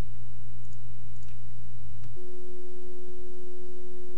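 A steady electronic tone that steps up to a higher pitch about two seconds in, with a few faint clicks in the first half.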